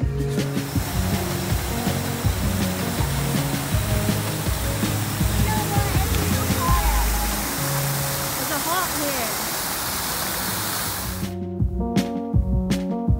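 Rushing, splashing water of an outdoor fountain's jets falling into its basin, under background music; the water sound starts about half a second in and cuts off abruptly near the end.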